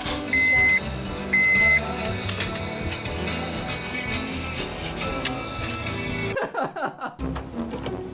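Background music, with two short high beeps about a second apart near the start. The music briefly drops out about six and a half seconds in.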